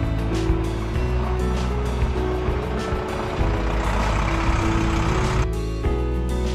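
Background music over the sound of a flatbed truck's diesel engine as it drives past on a cobbled street. The engine and road noise build and then cut off suddenly about five and a half seconds in, leaving only the music.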